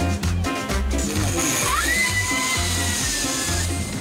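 Upbeat music with a steady bass beat. About a second in, a jet ski's engine whine rises sharply in pitch and holds, sagging a little, over a hiss of spray, and stops shortly before the end.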